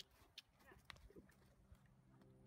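Faint hoofbeats of a horse walking on a dirt arena: a few sharp clicks in the first second, then quieter.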